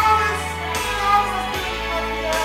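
Male crossover tenor singing high, held notes in full, unamplified voice over a recorded pop backing track with a steady bass line.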